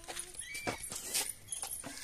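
About five irregular sharp knocks and splashes as a plastic mug and bucket are handled and water is thrown, while a small toy vehicle is washed.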